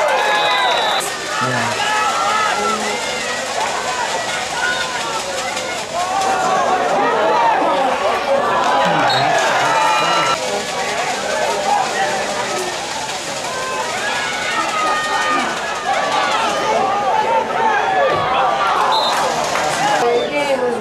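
Many spectators' voices talking and shouting at once in a football crowd, overlapping without pause. Short high whistle blasts sound briefly just after the start and again near the end.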